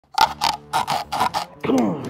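A wooden board jabbed down again and again onto a golf ball set on pink foam insulation board: about six quick knocks with a squeaky ring, then a short falling groan near the end.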